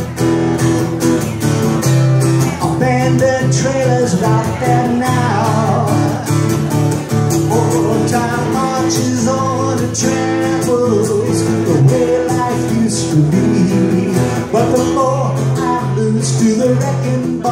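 Solo acoustic guitar strummed in a steady rhythm under a man's singing voice, played live as a country-style song.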